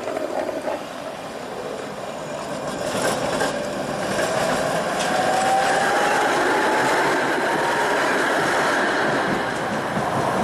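Tatra T3 tram passing close by on street track: wheels running on the rails, growing louder as it goes past, with a few clicks over the rail joints and a faint rising whine.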